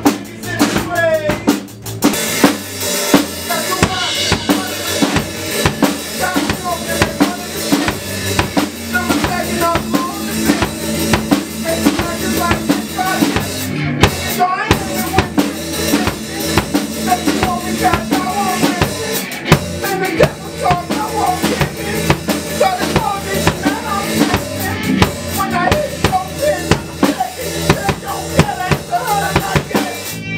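A band playing together: a drum kit keeps a steady beat with kick, snare and cymbals under guitar and other pitched instruments.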